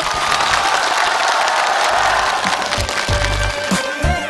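Studio audience applauding. The song's backing music comes up under it, with a low bass beat entering about three seconds in.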